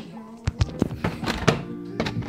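Several sharp knocks and thunks, about five in a second, over a steady low hum.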